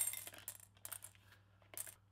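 Jelly beans tipped from a small cardboard box into a ceramic bowl: a loud clatter with a high ringing clink at the start, then a few scattered clicks as more beans drop and knock against the bowl.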